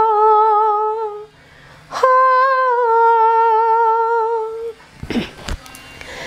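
A woman singing unaccompanied in two long held notes with a slight vibrato. The first note ends about a second in, and a sharp breath comes before the second note. Near the end there are a few brief knocks and breathing sounds.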